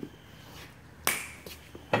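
One sharp click about a second in, with a few fainter clicks before and after it: a hydraulic quick coupler on the compact tractor's front-blade hoses being uncoupled.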